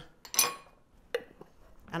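A metal spoon set down on a plate or counter: a sharp clink about half a second in, then a lighter click a little over a second in.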